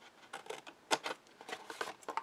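Small scissors snipping through white cardstock: a quick series of short, crisp cuts, the loudest about a second in.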